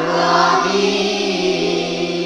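A man's voice, amplified through a microphone, holding one long melodic note of Quran recitation in the tilawah style, with a small waver about half a second in.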